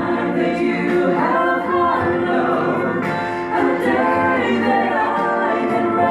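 Small mixed vocal group, men and a woman, singing the chorus of a worship song together in harmony through handheld microphones.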